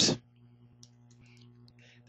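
A few faint computer keyboard keystrokes, Shift and 8 pressed to type an asterisk, over a low steady hum. A word trails off right at the start.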